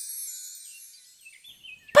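High chime tones ringing out and fading away over about the first second, the tail of a short musical sting. A few faint chirps follow before a voice starts at the very end.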